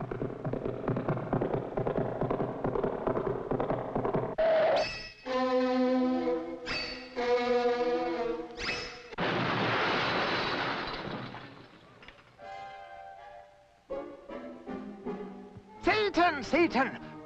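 Cartoon film score: a busy musical passage, then sustained chords broken by three sharp hits. A long crash-like wash of noise follows in the middle, then quieter chords near the end.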